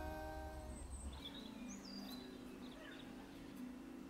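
The last held note of a song fading out in the first second, then faint outdoor ambience with a few short bird chirps in the middle.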